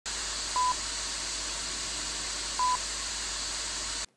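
Steady electronic hiss of static with two short, high beeps about two seconds apart; the hiss cuts off suddenly at the end.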